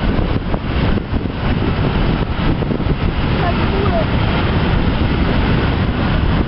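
A long train of Fccpps gravel hopper wagons rolling past, with a steady rumble and rattle of wheels on the rails, mixed with wind buffeting the microphone.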